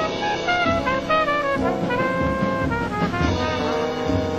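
Live jazz horn section, trombone and trumpet with saxophone, playing a melody together in held and stepping notes.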